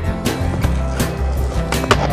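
Background music with a steady beat, with skateboard sound over it: a sharp wooden clack of a board about two seconds in as a skater goes up onto a concrete ledge.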